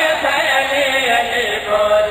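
Several men's voices chanting loudly together into a microphone, the voices overlapping and rising and falling in pitch without a break.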